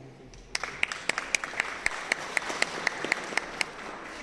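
Audience applauding, with one pair of hands clapping close by in a steady beat of about four claps a second. It starts about half a second in and dies down near the end.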